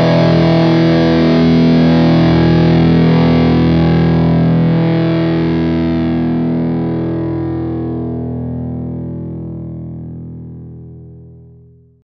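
Distorted electric guitar chord held and left to ring out, slowly dying away to silence near the end.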